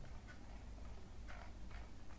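Faint, irregular clicking from a computer mouse's scroll wheel as the page is scrolled, a few clicks about a second and a half in, over a low steady hum.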